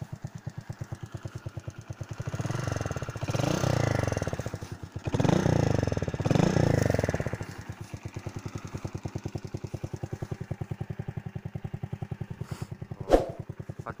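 Small single-cylinder four-stroke motorcycle engine, its valves left unadjusted, idling with an even beat and revved up and down twice. A single sharp knock comes near the end.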